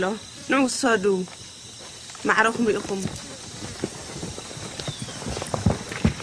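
A voice speaking two short phrases in the first half, followed by a few scattered light knocks and clicks.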